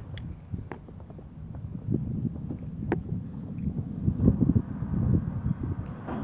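Low, gusty rumble of wind buffeting the microphone, getting louder in the second half, with a couple of faint clicks.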